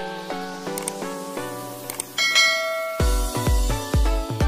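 Background music: soft melodic notes with a short bright chime a little after two seconds, then a beat with heavy bass drum hits coming in at about three seconds.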